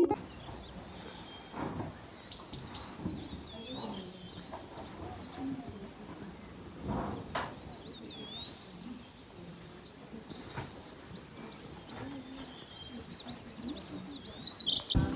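Small birds chirping and calling, many short high twitters and rising and falling whistled notes, with a few faint distant voices underneath.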